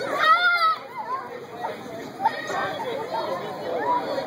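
Young children's voices shouting and chattering at play, with a loud high-pitched squeal in the first second.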